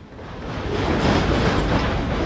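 HO scale model freight cars rolling past on the track, a steady rolling noise of wheels on rail that builds up over the first second.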